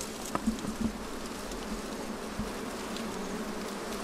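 A cluster of wild honeybees buzzing steadily on an exposed comb, a low continuous hum, with a few sharp clicks in the first second.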